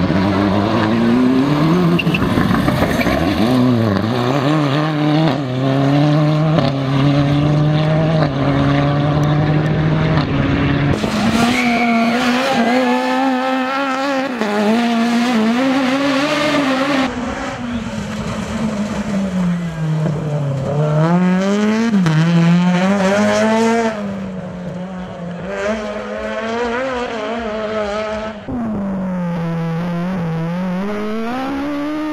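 Rally car engines accelerating hard, one car after another, with the revs climbing and dropping again and again through gear changes.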